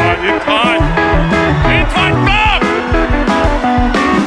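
Live rock band playing an instrumental passage: electric guitar over a full drum kit.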